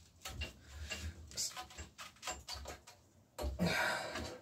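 Small clicks and knocks as an alloy brake lever clamp is worked along a bicycle handlebar against the rubber grip. Near the end comes a longer rubbing scrape as the grip is forced along and off the bar.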